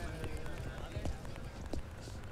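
Faint murmur of a crowd with scattered footsteps on pavement.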